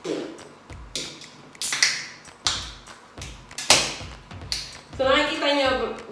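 Beer can handled in the hands: a series of sharp taps and clicks, roughly one a second, followed near the end by a voice.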